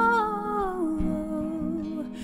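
A woman's voice holds one long sung note, sliding down to a lower pitch a little before halfway and sustaining it, over soft acoustic band accompaniment.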